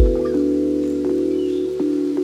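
Lo-fi hip-hop music: a low kick-drum thump right at the start, then a held chord with the beat dropped out.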